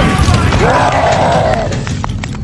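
Loud explosion-style sound effect with a low rumble slowly dying away, and a voice crying out over it about half a second in.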